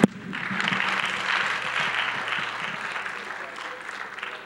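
A sharp knock right at the start, then the audience applauding, the clapping swelling within half a second and slowly fading toward the end.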